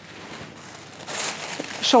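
A sheet of silk tissue paper rustling as it is unfolded and lifted off a table: a short rustle in the second half.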